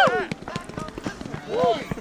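Climbing spikes striking a wooden pole in a quick, irregular series of knocks as a climber works on it. A shout from onlookers trails off at the start and another comes about one and a half seconds in.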